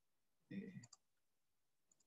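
Near silence, with a short voiced hesitation sound about half a second in and a few faint computer mouse clicks, one just before the middle and one near the end.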